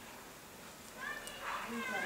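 A high-pitched, voice-like call gliding in pitch, starting about a second in, over faint room tone.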